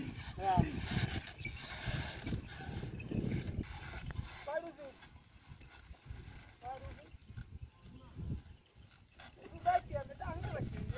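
A bullock cart driver giving short shouted calls to his pair of bulls, about four calls spaced a few seconds apart, with a low rumble in the first few seconds that fades away.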